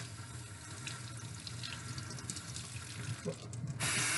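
Kitchen tap running into a stainless steel sink as the water is switched to cool; the rush of water grows suddenly louder just before the end.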